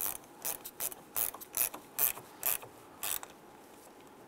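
Ratchet clicking in short back-and-forth strokes as it tightens the bolt on a car battery's positive terminal clamp, about nine quick bursts roughly every half second, stopping a little past three seconds in.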